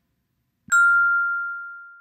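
A single bell-like ding, struck once about two-thirds of a second in, holding one clear ringing tone that fades slowly away.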